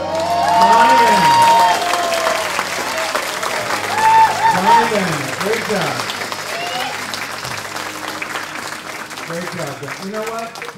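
Audience applause for a singer, with voices rising over it. It is loudest in the first couple of seconds and again a few seconds in, then thins toward the end.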